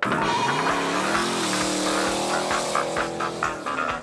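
Classic car doing a burnout: the engine revs up about a second in and then holds at high revs while the spinning rear tyres squeal, with music underneath.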